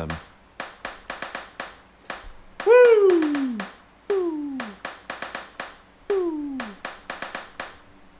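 WerkBench step sequencer on an iPad playing back a looping pattern of recorded hand-clap samples, heard as a run of short sharp claps. Over it, a silly vocal noise sliding down in pitch is overdubbed into the iPad microphone, three times, the first and loudest about three seconds in.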